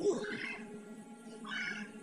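A beagle puppy whining in two short, high cries, about half a second in and again near the end, as it is brushed, over steady background music.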